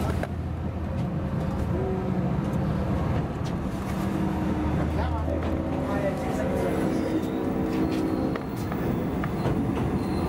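Running noise of a moving diesel-hauled passenger train heard from inside a carriage: a steady rumble and wheel noise on the track. About four seconds in, a steady diesel engine drone joins and lasts about four seconds.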